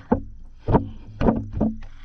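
Water sloshing with dull knocks as feet in socks and a sneaker shift about in a water-filled tub: four thumps in two seconds over a low steady hum.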